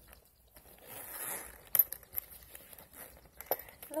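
A metal zipper on a small purse's pocket being drawn, a short rasp about a second in, with a couple of sharp clicks and rustle from handling the bag.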